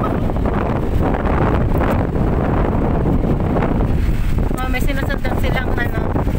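Steady loud rumble of wind buffeting the microphone and a car driving over sand dunes, with voices talking over it in the second half.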